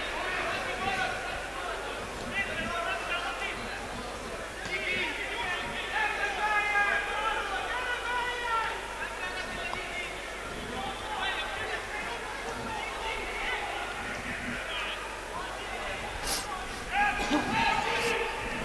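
Football stadium ambience with distant voices shouting and chanting from the pitch and stands.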